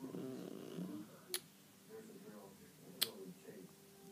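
Faint talking at first, then two sharp clicks about a second and a half apart.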